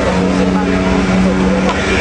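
A steady engine drone, as from a vehicle running close by, holding one pitch over a noisy background for about two seconds.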